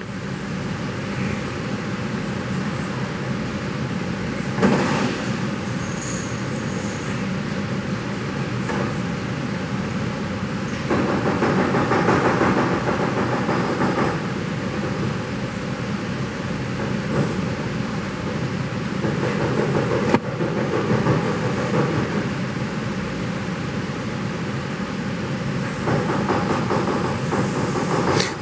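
A steady mechanical rumble and hiss with a low hum, swelling a little in a few stretches, with a sharp click about five seconds in.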